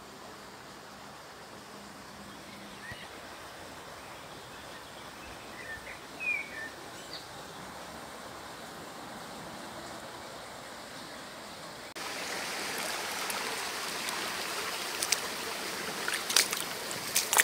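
Faint outdoor background hiss with a few brief bird chirps, then about three quarters of the way through an abrupt cut to the louder, steady rush of a shallow stream running, with a sharp click near the end.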